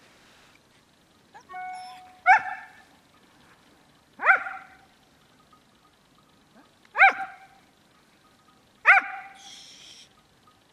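Dog whining briefly, then giving four sharp, loud barks about two seconds apart while sitting at heel. This is the unwanted vocalising during obedience work that the handler is trying to train away.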